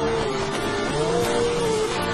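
Live rock band with a distorted electric guitar playing a lead: one long sustained note that bends up about half a second in, holds, and slides back down near the end, over the band's steady backing.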